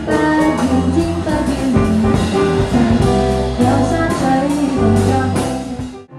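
Live jazz band playing, with electric bass guitar and drum kit carrying the groove and cymbal strokes over held melodic notes. The music drops away sharply near the end.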